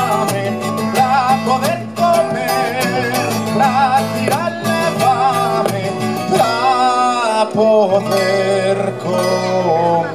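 A live folk song: a man singing with wavering, drawn-out notes over an acoustic guitar accompaniment, heard through the stage PA.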